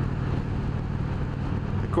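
Indian Springfield Dark Horse's Thunder Stroke 111 V-twin engine running steadily at highway cruising speed, under a haze of wind and road noise.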